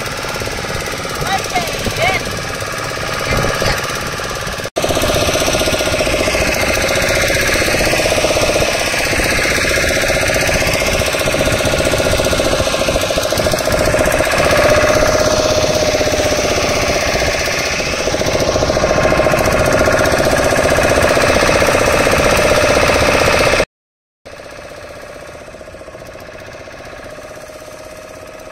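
A boat engine running steadily with a rapid knocking beat, heard from on board the moving boat. It is louder from about five seconds in, drops out briefly near the end and then continues more quietly.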